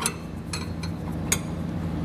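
Light metal clinks of a steel U-bolt being worked through the holes of a steel suspension bracket, two sharp clicks about a second apart, over a steady low hum.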